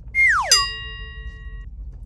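Cartoon-style sound effect: a whistle sliding quickly down in pitch, then a bright bell-like ding that rings for about a second.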